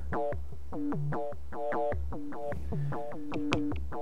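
Buchla 200e modular synthesizer playing an FM patch: a sine oscillator frequency-modulated by a second sine oscillator. It plays a quick, even run of short notes whose pitches jump about at random, set by the synth's source of uncertainty random-voltage module.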